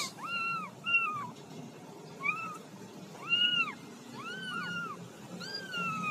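A young kitten mewing repeatedly: about seven short, high-pitched mews, the last one longer and falling in pitch.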